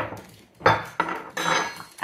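A metal spatula and a ceramic baking dish clattering on wood as they are set down, a few separate knocks and clinks about half a second apart.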